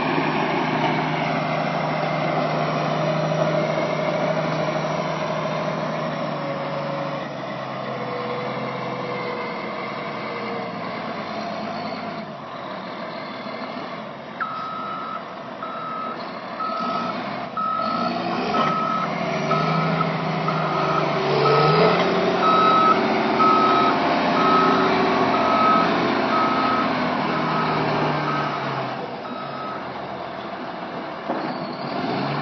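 Caterpillar 143H motor grader's diesel engine running as the machine moves, its note rising and getting louder about two-thirds of the way through. About halfway in, its reversing alarm starts beeping about once a second, the sign that the grader is backing up.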